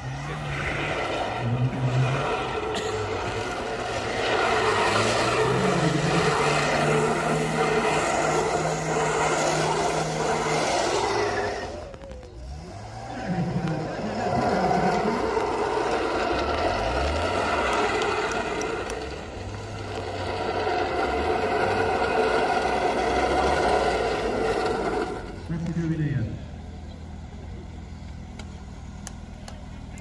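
Classic Mini's A-series engine revved hard as the car is driven around in a display on wet tarmac. There are two long loud bursts with the revs rising and falling, and a short lull between them. Near the end the revs drop away and the engine settles to a quieter idle.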